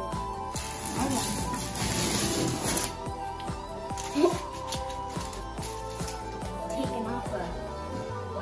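Background music with steady held notes; for about two seconds near the start it is overlaid by a hissing tear, painter's tape being peeled off a painted wall.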